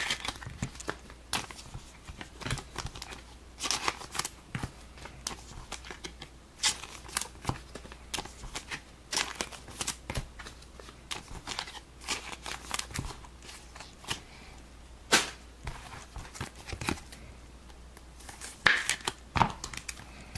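Trading cards being handled and sleeved: irregular rustles, scrapes and clicks of card stock against plastic penny sleeves and hard toploaders, with a few sharper clicks.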